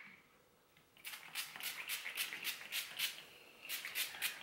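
Garnier Fructis heat protectant pump spray bottle misting onto damp hair: a quick run of short sprays, about four a second, starting about a second in, with a brief pause before a few more near the end.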